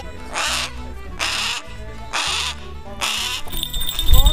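A Harris's hawk calling, four harsh rasping screeches less than a second apart, over low steady background music.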